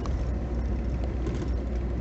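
Steady low rumble of a moving vehicle heard from inside its cabin: engine and road noise while driving.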